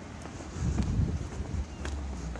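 Wind buffeting a phone's microphone on a gale-blown street: a low, uneven rumble that swells about a second in.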